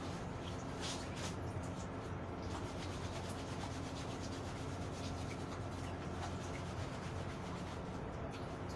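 Wet clothes being scrubbed together by hand in short, irregular rubbing strokes, over a steady low hum.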